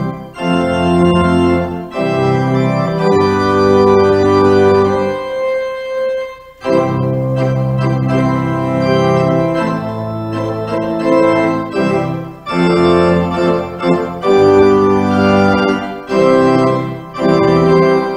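Organ playing the service prelude in sustained, held chords that change every second or two, with a brief break about six and a half seconds in.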